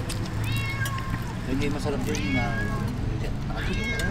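A cat meowing three times, short arching calls spread across a few seconds, over a steady low hum and quiet voices.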